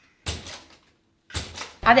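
Two short knocks, each fading over about half a second, separated by dead silence.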